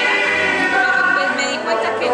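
A woman tango singer singing, her voice holding long sustained notes.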